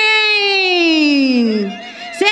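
A woman's singing voice holding one long note that slides steadily down in pitch and fades near the end, closing a sung verse; a fainter wavering tone comes in as it dies away.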